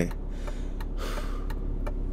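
Low steady cabin hum of the 1997 BMW E36 M3, from its S52 straight-six engine and the road, with a soft breath from the driver about a second in and a few faint ticks.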